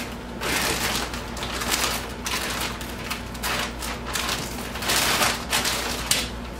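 Thick plastic sheeting crinkling and crackling in a string of bursts as it is handled and pressed flat around a mattress.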